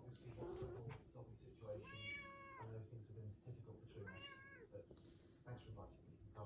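Domestic cat meowing twice: a longer meow about two seconds in and a shorter one about four seconds in.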